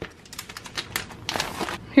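Holographic foil mailer envelope crinkling as it is opened and a paper booklet is slid out: a run of short, sharp crackles with a denser rustle about one and a half seconds in.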